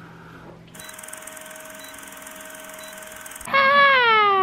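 A soft breathy puff as birthday candles are blown out, then a steady hiss with a faint steady tone. Near the end a loud, long vocal sound slides steadily down in pitch.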